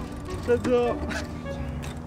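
Onlookers' voices calling out, with one loud exclamation about half a second in, over background music with held notes.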